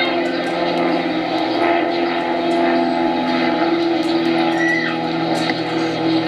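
A steady low hum with faint, scattered voices over it, and a short high call about five seconds in.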